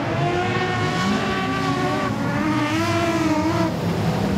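Several modified sedan race cars' engines running together on a dirt speedway, their notes rising and falling in pitch as the cars go round the track.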